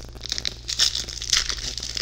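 A foil trading-card booster pack wrapper crinkling and tearing as it is ripped open by hand, an irregular crackle that picks up about a third of a second in.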